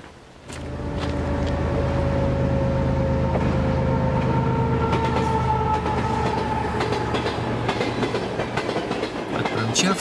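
Freight train passing close by: a loud, steady rumble of wagons running on the rails, starting abruptly about half a second in, with faint whining tones that slowly fall in pitch.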